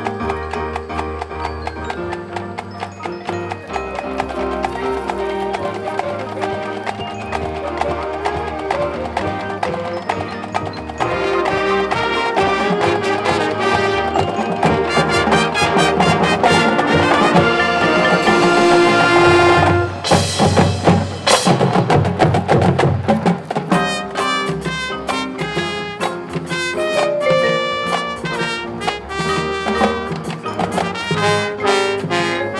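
High school marching band playing its field show, with mallet percussion and drums from the front ensemble. The music swells louder about a third of the way in, peaks in a loud crash about two-thirds through, then the band carries on.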